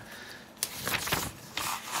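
Hands rustling and scraping against a paper LEGO instruction booklet and loose bricks on a tabletop, a few short strokes about half a second apart.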